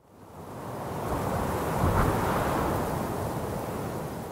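A rushing noise like wind or surf swells up out of silence over about two seconds, then holds steady.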